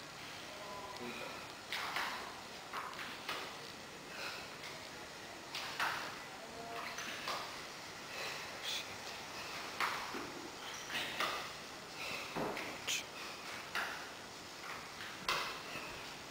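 A person breathing hard in short, irregular noisy breaths about once a second, recovering from exertion during a workout.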